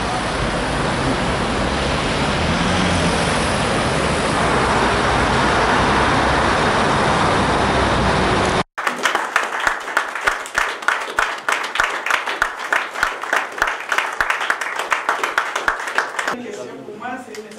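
Steady road traffic noise for the first half. After a sudden cut, a roomful of people clapping, many rapid overlapping claps.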